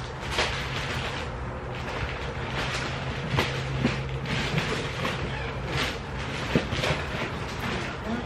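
Black plastic garbage bag rustling and crinkling irregularly as hands dig through its contents.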